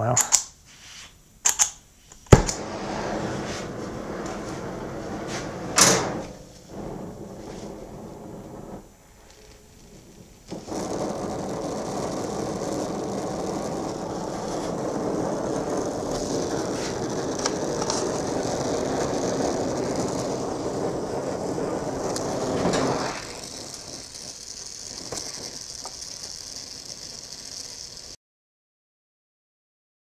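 Oxy-acetylene gas welding torch flame, a steady rushing hiss that becomes louder about ten seconds in and eases off about five seconds before the end. A few sharp clicks and one loud pop come just before it starts.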